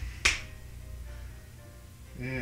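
A single sharp snap about a quarter of a second in, followed by faint steady tones over a low hum.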